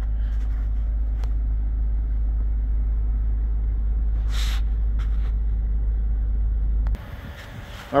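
Steady low rumble inside the cabin of a 2024 Nissan Murano with its engine running, with a few light clicks and a brief rustle about halfway through. The rumble cuts off a second before the end, leaving a quieter outdoor background.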